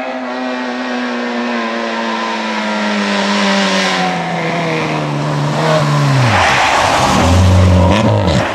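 Rally car engine heard as the car approaches at speed, its note falling steadily and then dropping quickly as it passes close by. After that comes a loud rushing noise of tyres on snow and ice, loudest near the end, over a low engine tone.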